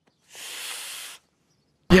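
A cartoon man's voice letting out one hiss of breath through clenched teeth in pain, lasting just under a second, with silence either side.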